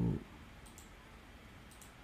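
A short low thump at the very start, then a computer mouse clicking twice about a second apart, each a quick double click of press and release.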